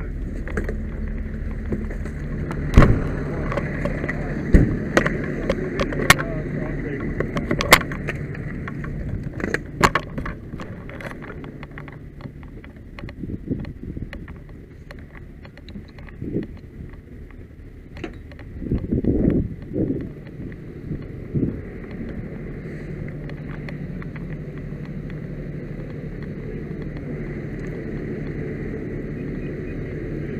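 A fire engine's diesel engine running with a steady low hum. Sharp clanks and knocks of metal gear and doors come often in the first ten seconds and again a few times later. The hum dips for a while near the middle, then runs steadily again.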